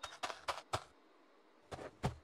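Light, dry clicking taps, about four a second for the first second, then a pause and a few more near the end: a cartoon-style sound effect of a small soft character shuffling and stooping over a pile of stones.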